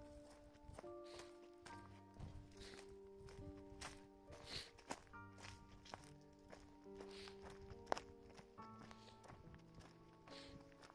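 Faint footsteps on a dry, rocky dirt trail, with one sharp knock about eight seconds in, under soft instrumental music of long held notes.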